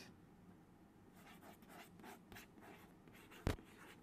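White chalk writing on a chalkboard: a run of faint, short scratching strokes, then one sharp tap about three and a half seconds in.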